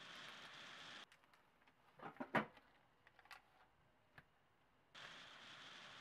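Near silence with a few short, soft clicks and rustles, clustered about two seconds in and a couple more later: slices of cheese being laid by gloved hands onto chicken breast on plastic wrap.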